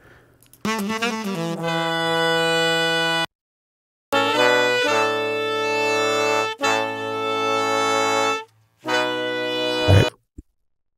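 Multitrack recording of a horn section, saxophones and trombones, playing back. It plays held chords in three phrases and stops twice for a moment.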